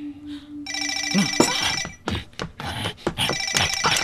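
A telephone ringing with a trilling electronic ring: two rings, each a little over a second long, starting just under a second in and about three seconds in.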